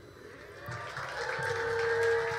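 Light applause from a small audience just after a song ends, growing a little louder, with a steady held musical tone coming in about a second and a half in.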